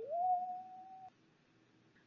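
A woman's high, pure-sounding "woo" hoot through pursed lips: one note that slides up and is held for about a second, then stops.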